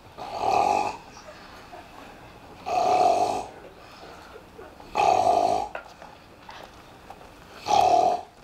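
Exaggerated stage snoring by a young actor lying in bed: four loud, drawn-out snores about two and a half seconds apart.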